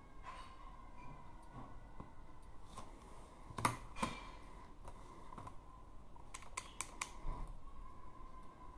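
Handling noise: scattered light clicks and taps, the two loudest about three and a half and four seconds in, then a quick run of four or five clicks around six and a half to seven seconds.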